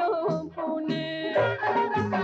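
Persian folk-style song from an old film soundtrack: a singing voice carrying an ornamented melody over instrumental accompaniment with a repeating bass pattern.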